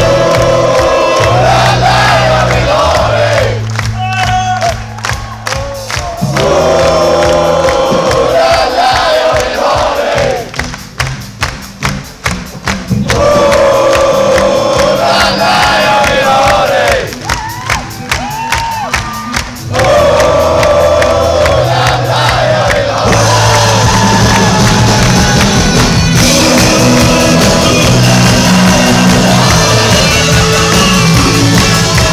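Live rock band playing a song with electric guitar, bass and drums while a crowd sings along and cheers. Three times the band drops back and a steady clapping beat carries on under the singing before the full band returns.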